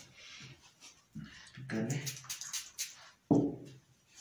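A person's voice making short murmured, wordless vocal sounds, the loudest starting abruptly a little after three seconds in.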